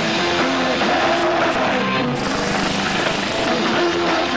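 Punk rock band playing live: loud distorted electric guitars with bass and drums, played without a break.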